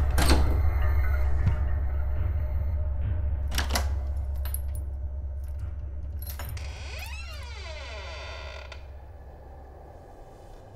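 Horror-film sound design: a deep low drone that slowly fades away, with sharp clicks and creaks in the first four seconds and a bending, several-toned pitch sweep about seven seconds in.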